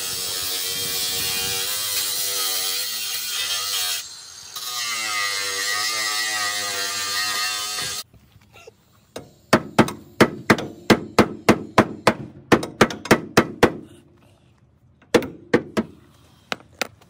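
Cordless angle grinder cutting the sheet-metal lip of a car's rear wheel arch, trimmed so the tyre stops rubbing; its pitch wavers under load and eases off briefly about four seconds in. After about eight seconds the grinder stops and a hammer strikes the metal in a quick run of about three blows a second, with two more near the end.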